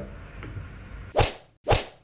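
Two quick swoosh transition sound effects about half a second apart, in the second half, after a second of faint room noise.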